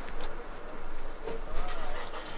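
Steady low rumble of a car driving slowly, with faint voices in the second half.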